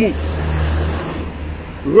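A motor vehicle passing in the street: a low rumble with road noise, loudest in the first second and then fading away.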